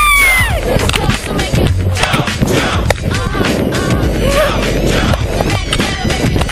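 A woman's scream, falling in pitch, trails off about half a second in as she drops on the bungee rope, followed by loud rattling air buffeting on the camera as she falls, over hip hop music.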